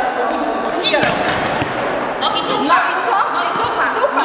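Several people talking at once in a large, echoing sports hall, with a dull thud about a second in and another shorter one near the end.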